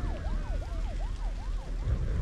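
Emergency vehicle siren in a fast yelp, rising and falling about three times a second, with a second siren's slower falling wail above it, over a steady low rumble.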